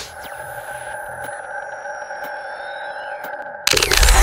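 Electronic sound design for an animated logo: a steady drone of a few held tones with faint falling high sweeps and a few ticks. About three and a half seconds in it gives way suddenly to a loud burst of noise.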